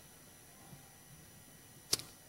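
Near silence: room tone in a lecture hall, broken by one short, sharp click near the end.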